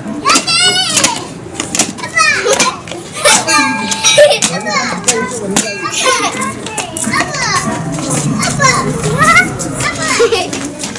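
Young children at play, with high-pitched squeals, shouts and laughter that come and go throughout, the sharpest squeals about a second in and again near the end.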